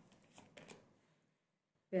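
Tarot cards being handled: a few faint clicks and slides of the deck in the first second, as a card is drawn.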